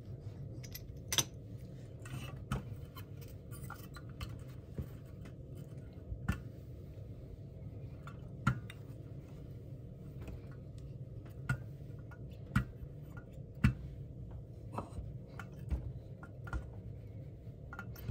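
Scattered sharp clicks and taps from a seam roller and a household iron being handled and set down on a fabric pressing surface, about a dozen in all, over a steady low hum.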